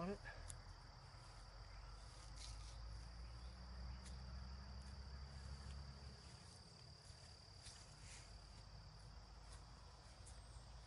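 Faint, steady, high-pitched drone of insects singing, with a low rumble through the first six seconds.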